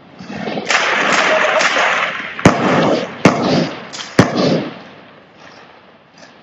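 Gunfire: a dense stretch of rapid crackling shots for about two seconds, then three sharp, louder single shots about a second apart, fading out near the end.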